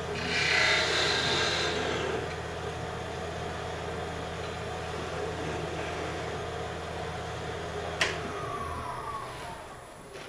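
Wood lathe running with a parting tool cutting into the spinning wood, loudest as a scraping cut in the first two seconds, over the motor's steady hum. A single sharp click comes about eight seconds in, then the lathe winds down with a falling whine and the hum stops.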